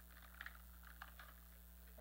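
Near silence: a steady low electrical hum with a few faint small clicks.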